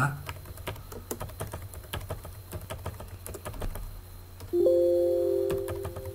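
Computer keyboard being typed on in quick, uneven keystrokes while router commands are entered. About four and a half seconds in, a loud steady ringing tone starts and fades away over about a second and a half.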